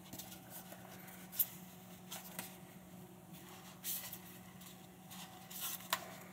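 Faint rustling and brushing of a neoprene lens cover being stretched and pulled by hand over a lens hood, with a sharp tap about a second and a half in and louder brushing near four seconds and again just before the end.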